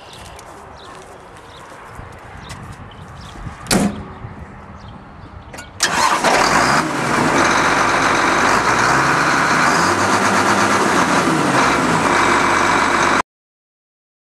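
Case IH tractor: a sharp knock of the cab door shutting about four seconds in, then the diesel engine starting with a sudden loud onset near six seconds and running, its pitch rising and falling, until the sound cuts off abruptly near the end.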